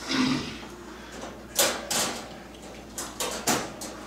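Wire dog crate being unlatched and its metal mesh door swung open: a few sharp metallic clicks and rattles, about one and a half to two seconds in and again around three to three and a half seconds.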